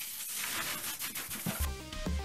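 Rustling of a black plastic bin bag full of rubbish being handled. About one and a half seconds in, electronic background music with a heavy bass beat starts suddenly.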